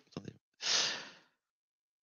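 A man's audible breath, a short sigh-like rush of air lasting under a second.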